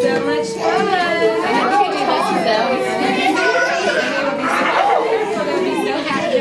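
Several voices of adults and toddlers chattering over one another.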